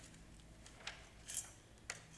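Faint rustling of paper as a booklet's pages are handled, a few short rustles in the second half over quiet room tone.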